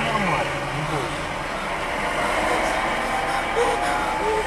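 Steady vehicle running noise, a loud even rush with no breaks, with a faint tone rising slowly in pitch in the second half.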